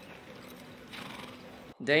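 A horse, faint, in the soundtrack of a TV drama playing, with only quiet background under it. A voice starts abruptly just before the end.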